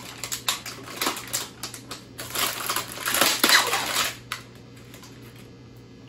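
Plastic wrapper of an Oreo cookie package being torn open and crinkled: a run of sharp crackles and rustling, loudest in the middle, that stops about four seconds in.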